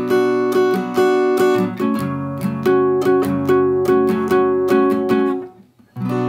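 Acoustic guitar strummed in a quick down-and-up pattern, changing chord about two seconds in. The strumming stops briefly just before the end.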